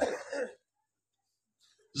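A man's amplified voice trails off into a short rough breathy sound, then there is dead silence for about a second and a half before his speech starts again at the very end.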